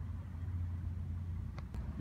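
A steady low hum, with a couple of faint clicks near the end.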